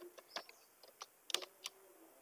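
Computer keyboard typing: about eight keystrokes at an uneven pace, as a word is typed in.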